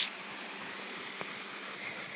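Steady beach ambience of small waves lapping on the shore, with a single faint click about a second in.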